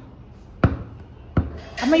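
Two sharp knocks about three-quarters of a second apart, as a wire basket is handled and bumped against a tabletop. A voice starts near the end.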